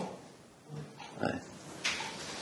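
A man's quiet voice between sentences: a brief low hum, then a soft murmured "ouais", and a short breath near the end.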